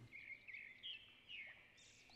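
Faint birdsong: a series of short chirps and quick pitch glides, a few each second, over low background hiss.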